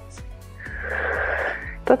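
Background music with a steady beat, over which a woman exercising lets out one long, breathy exhale from about half a second in, lasting a little over a second.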